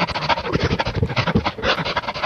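A dog panting quickly and evenly, short breaths at about ten a second.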